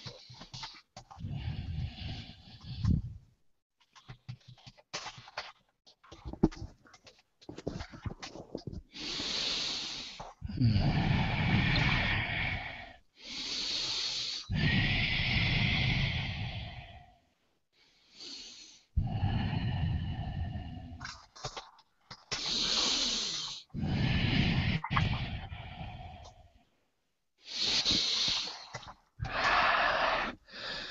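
A man breathing heavily into a headset microphone: long, loud breaths, gasps and sighs, some with voice in them, in irregular bursts of one to three seconds with abrupt silences between. This is a channeler's breathing as he goes into trance.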